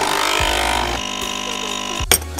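Magimix capsule coffee machine's pump buzzing steadily as it brews a coffee, starting right as the button is pressed; the buzz shifts slightly in tone about a second in.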